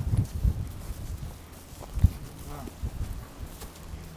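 Horses shifting their hooves on hard, dry ground: scattered low thuds, with one sharp knock about two seconds in.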